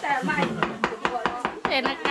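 Raw pork being chopped with a large knife on a round wooden chopping block: rapid, irregular chops, several a second.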